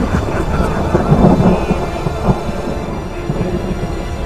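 Film soundtrack: a heavy, continuous low rumble like thunder, with a few louder knocks, mixed with dramatic music.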